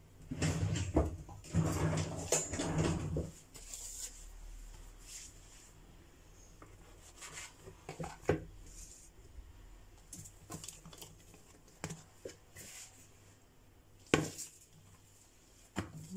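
Hands and a plastic dough scraper working a ball of bread dough on a granite countertop, cutting it into pieces. There is a rustle of handling for the first three seconds, then soft scattered taps, with two sharper knocks about eight and fourteen seconds in.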